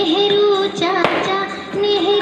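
A Hindi children's song plays: a high, child-like singing voice holds long notes over a musical backing, with a short sharp beat about a second in.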